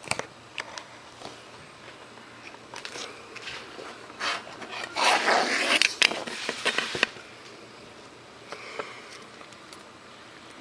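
Handling noise: a few light clicks and taps, then a rustling scrape lasting about two seconds in the middle, over a quiet room background.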